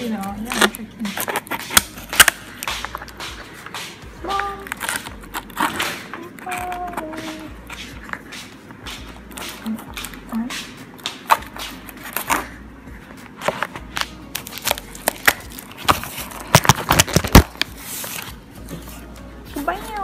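Cardboard fruit box being opened: packing tape cut and pulled off the flaps, with the cardboard crackling and rustling and many sharp, irregular clicks.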